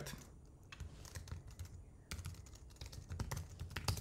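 Typing on a computer keyboard: a run of quick key clicks as a short phrase is typed, ending with a louder press of the Enter key.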